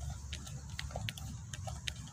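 Hands mixing dry, powdery fishing bait in a plastic tub: scattered short, scratchy crackles over a steady low rumble.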